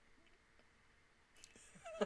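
Near silence: room tone. Near the end there is a faint breath and a small vocal sound as she starts to laugh.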